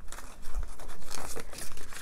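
Paper banknotes and a clear plastic binder envelope rustling and crinkling as bills are handled and slid into the pocket, a busy run of small scratchy crackles.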